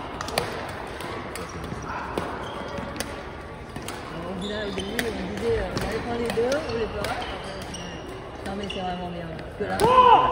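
Badminton play in a gym: sharp clicks of rackets striking the shuttlecock and squeaks of court shoes on the wooden floor, with voices from nearby courts. Near the end a loud, held squeal-like sound.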